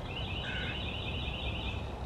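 A songbird's trill: a rapid run of identical high notes, about seven a second.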